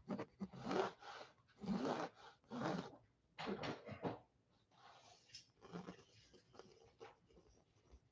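Mechanical pencil scratching on a canvas in a run of short, irregular strokes as lines are drawn.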